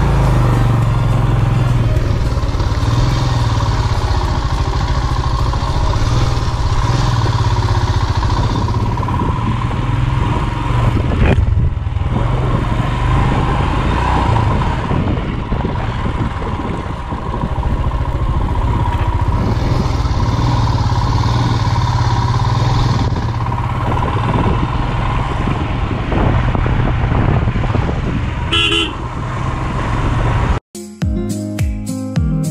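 Royal Enfield Himalayan's single-cylinder engine running steadily under way on a dirt lane, with road and wind noise. A short, higher sound comes near the end.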